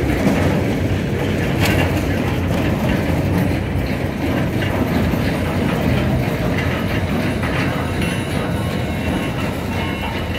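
A long train of SecureGuard 800 steel barrier segments with mesh fence panels, being towed on its wheels across pavement: a steady rolling rumble with continuous rattling and clanking of the linked steel sections.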